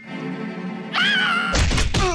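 Cartoon soundtrack: held music notes, then a wavering, warbling comic sound about a second in, and a loud low thud with falling tones near the end.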